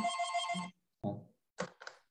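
An electronic ringing tone, like a phone ringtone or alert, held steady on one chord for under a second and then cut off. A few faint, brief sounds follow.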